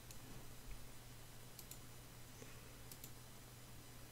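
A few faint clicks of a computer mouse, a pair about halfway through and more near the end, over a low steady hum.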